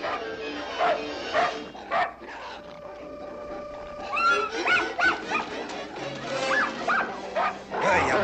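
Cartoon orchestral music, with a dog barking and yipping in short bursts over it in the second half.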